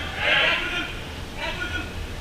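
Players shouting during an indoor soccer match: a loud shout about half a second in and a shorter call near the end, over the steady background of the hall.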